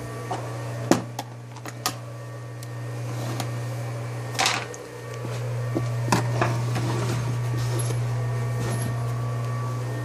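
A steady low hum runs throughout, with sharp clicks and knocks, and rubbing that grows louder from about halfway, as the recording phone is handled and moved.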